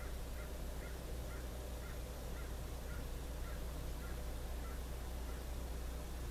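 Faint bird calls, a short call repeated about twice a second and stopping shortly before the end, over a steady low hum and hiss.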